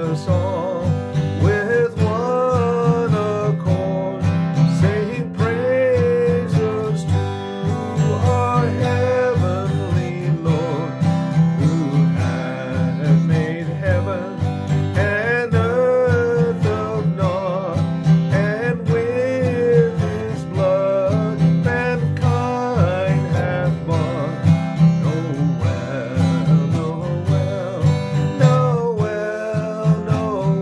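A man singing a Christmas song while strumming an acoustic guitar.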